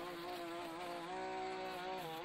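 A gas string trimmer's engine running at a steady buzz, its pitch wavering slightly and shifting about a second in as the line cuts through the grass.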